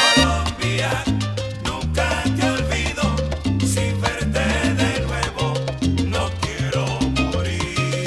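Salsa band playing an instrumental passage with no singing: a syncopated bass line moving under steady percussion, with melodic instrument lines above.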